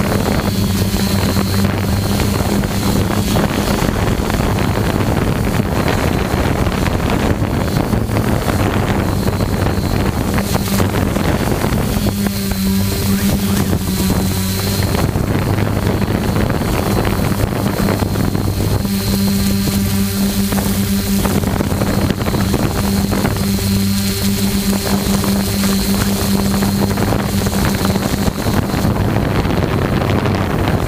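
A camera drone's own motors and propellers humming steadily through its onboard microphone, with a thin high whine over a low hum, and wind rushing on the microphone.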